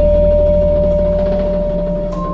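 Electronic ambient music: a single held pure tone over a low steady drone.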